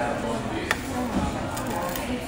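Busy restaurant background of people talking with music playing, and one sharp click about two-thirds of a second in.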